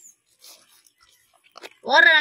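Faint scrapes and taps of a spoon against a plastic bowl as chili powder is spooned out. Near the end, a loud, drawn-out voiced call with a wavering pitch begins.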